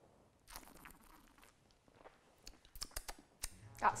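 A mouthful of white wine slurped with air drawn through it to aerate it, a soft airy hiss, followed by a few small wet mouth clicks.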